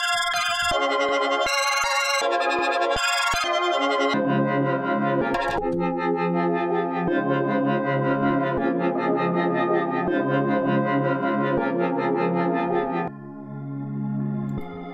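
A melody loop played by the Omnisphere software synthesizer while presets are auditioned. For the first few seconds it sounds as short, bright plucked notes. About four seconds in it switches to a fuller, sustained synth sound, and the sound changes again near the end.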